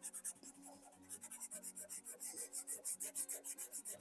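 Kalour pastel pencil scratching on paper in rapid short back-and-forth strokes, about five a second, with a brief pause about half a second in. The pencil is pressed very hard because its pigment is hard to lay down and it scratches.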